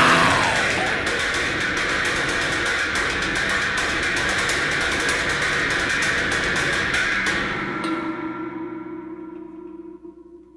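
The final chord of a punk rock song ringing out: the full band sustaining the chord, holding steady and then fading out from about seven seconds in.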